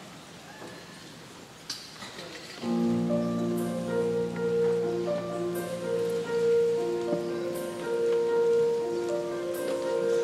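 A choir with band accompaniment starts a choral piece. After a quiet opening with a single click, the music comes in about two and a half seconds in as sustained chords of long held notes.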